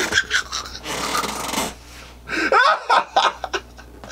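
A man laughing hard in bursts: a breathy, unvoiced stretch about a second in, then louder pitched bursts of laughter past the middle.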